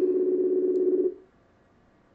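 Ringback tone of an outgoing Facebook voice call: a steady low tone sounds for about a second, then stops as the ring cycle pauses while the call waits to be answered.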